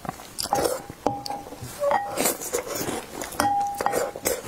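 Spoon scraping and knocking against a glass bowl as soggy, milk-soaked biscuit mush is scooped up, the glass giving several short ringing squeaks, the longest near the end, with wet biting and chewing between.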